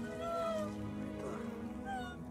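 Sombre background music with high, drawn-out crying wails over it: one long cry near the start and a shorter one just before the end.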